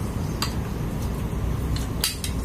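A few light clicks of utensils against dishes and bowls at a dinner table, over a steady low rumble.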